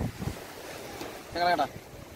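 Speech: a man's voice says one short word about one and a half seconds in, over steady wind and surf noise.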